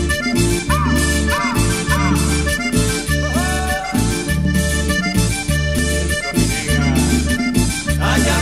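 Instrumental break of a cumbia song: accordion playing the lead melody over a repeating bass line and an even percussion beat.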